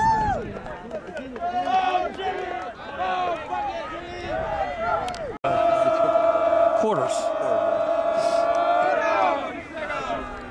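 Several players' voices shouting and cheering over one another. Then, about halfway through, a loud yell is held on one pitch for about four seconds before it trails off.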